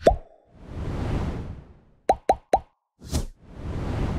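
Animated subscribe-button sound effects: a sharp pop with a quick upward pitch, a swelling whoosh, then three quick pops in a row about two seconds in, a short bright swish, and another swelling whoosh.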